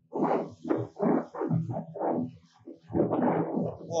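Inflatable PVC boat hull slapping and splashing through waves at speed, in irregular whacks roughly two a second, with the boat's motor running steadily underneath. The heavily loaded bow is catching the water.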